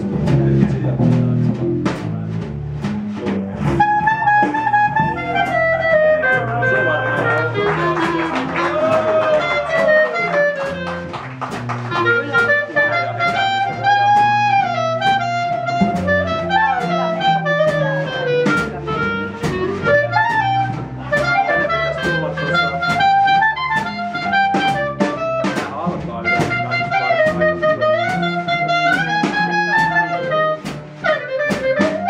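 Live small-group jazz: a clarinet plays a flowing, bending melody over upright bass and a drum kit with cymbals. Bass and drums carry the first few seconds, and the clarinet comes in about four seconds in.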